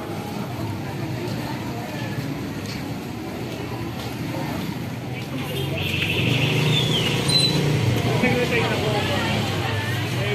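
Street ambience: indistinct voices in the background with a motor vehicle running nearby, getting louder a little past halfway.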